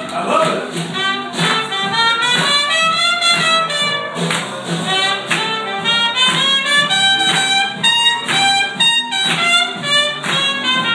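A trumpet plays a melodic solo over a live acoustic band, which keeps up a steady strummed rhythm with bass underneath.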